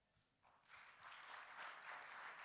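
Near silence, then faint applause from an audience in a hall begins a little under a second in and keeps going steadily.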